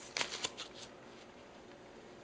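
Paper rustling and sliding as a folded sheet of paper is pulled away from a trading card in a hard plastic holder. It comes as a quick cluster of crinkles, loudest a fraction of a second in, and dies away within about a second.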